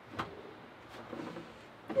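Wooden pull-out cutting board sliding out of a plywood cabinet on its slides: a few light knocks and clicks.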